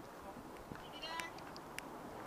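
Quiet outdoor background with a faint, brief distant call about a second in, and a few light clicks.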